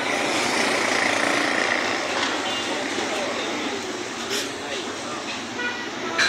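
Roadside traffic: passing vehicles' engines and tyres, with a few short horn toots.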